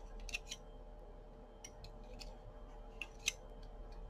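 Faint, scattered clicks of a metal loom-knitting hook against the plastic pegs of a round knitting loom as loops are lifted over in quick succession, about half a dozen over a few seconds, over a faint steady hum.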